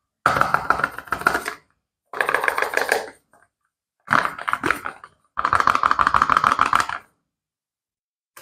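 Cardboard soap box handled in nitrile-gloved hands, crackling in four separate bursts of rapid, fine clicks as it is gripped and turned.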